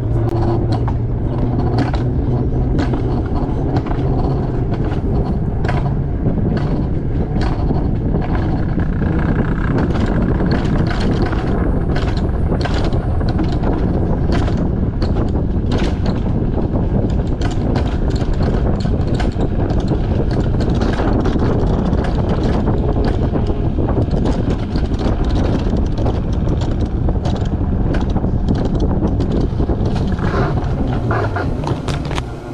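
Wiegand alpine coaster sled running down its twin steel tube rails: a loud, steady rolling rumble with frequent clicks and rattles from the wheels and sled. A low hum sounds in the first few seconds, then fades.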